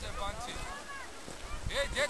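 Voices of people some way off, calling and talking, with wind on the microphone; one louder call near the end.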